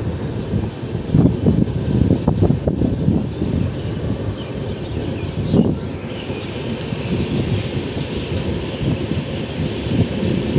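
Passenger train running at speed, heard from a coach doorway: a steady low rumble of wheels on rails with frequent irregular knocks and rattles, and a higher hiss in the second half.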